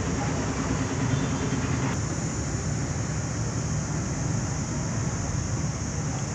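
Steady low rumble of distant road traffic, with a steady high hiss over it and no distinct events.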